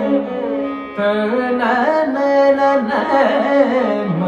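Live Carnatic music: a male voice and violin trace gliding, ornamented melodic phrases over a steady drone from an electronic tanpura, with mridangam accompaniment. The music dips briefly about a second in, then picks up again.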